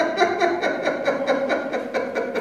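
A man laughing heartily in a long run of quick, evenly pulsed laughs.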